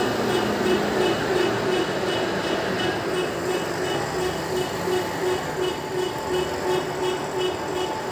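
A truck running in the street, with a pulsing tone repeating about twice a second over it.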